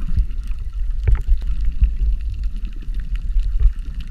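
Muffled underwater sound picked up by a camera held below the surface: a steady low rumble of moving water with scattered clicks and crackles throughout.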